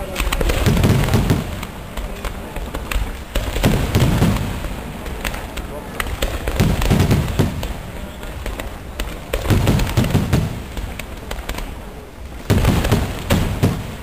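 Aerial fireworks display: shells bursting with deep booms about every three seconds, five in all, over a continuous crackle of smaller reports.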